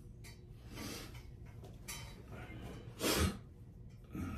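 A man's breathing and soft handling noise of an acoustic guitar being readied, not yet played: a few short breaths, the loudest about three seconds in with a soft bump.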